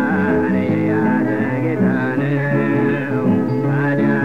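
Ethiopian gospel song (mezmur) playing steadily: singing over instrumental accompaniment.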